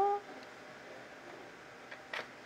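A spoken word ends at the very start, then quiet room tone with a faint steady hiss and one faint tick near the end.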